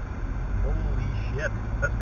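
Steady low rumble of a car interior while driving slowly in traffic, with a few brief, faint fragments of a voice.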